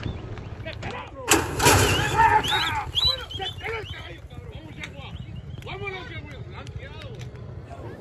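People shouting and whooping as racehorses gallop on a dirt track, over a steady low thumping rumble. A loud burst of noise runs from about one to three seconds in.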